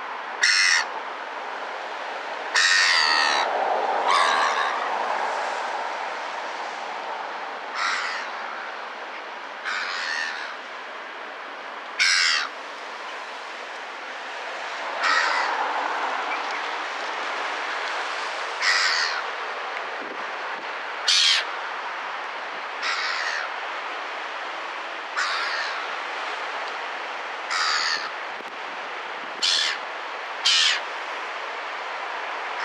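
Gulls calling: about a dozen short cries, one every couple of seconds, over a steady rush of surf.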